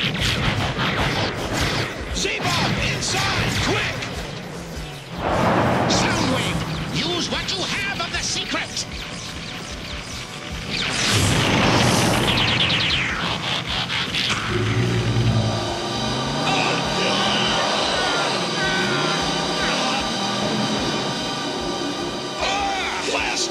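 Cartoon battle soundtrack: laser-blaster zaps and explosion booms over dramatic background music, with two loud blasts about five and eleven seconds in. In the last third the blasts give way to a steady electronic sound of held tones.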